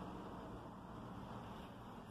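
Faint, steady background hiss and low hum of room tone, with no distinct sound events.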